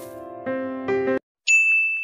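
Electric piano chords that change about half a second and again about a second in, then stop abruptly; about a second and a half in, a single bright bell 'ding' sound effect rings out and lingers, the chime of a subscribe-button notification-bell animation.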